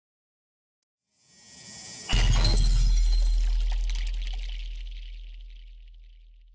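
Filmora9's stock 'Glass Break Explosion' sound effect: a rising rush that hits about two seconds in with a deep boom and glass shattering, then a long rumble that slowly dies away.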